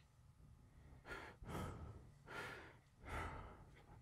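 Faint heavy breathing: four audible breaths, one after another, each about half a second long.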